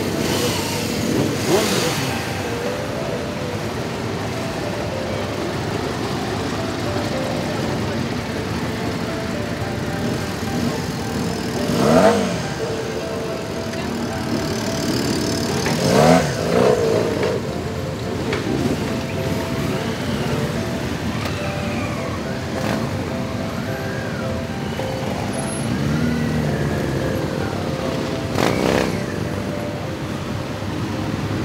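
A mass of motorcycles riding at walking pace with their engines running, and a few riders revving loudly about twelve and sixteen seconds in and again near the end. Voices mix in with the engines.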